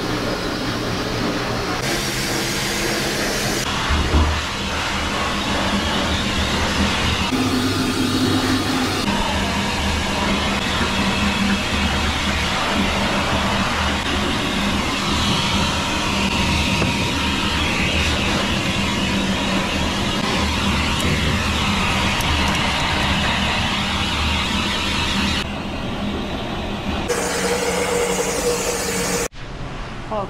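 High-velocity pet dryer blowing air through its hose onto a wet toy poodle puppy's coat: a loud, steady roar with a low hum whose pitch shifts abruptly several times, cutting off suddenly just before the end.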